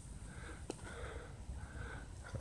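Soft breathing and sniffing close to the microphone over a low steady rumble, with one small click about two-thirds of a second in.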